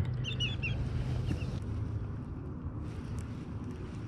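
A few short, high bird chirps in the first second, with one more a little later, over a steady low hum.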